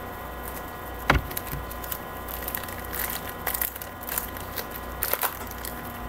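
Trading cards and their packaging being handled by hand: one sharp click about a second in, then a run of small clicks and crinkles.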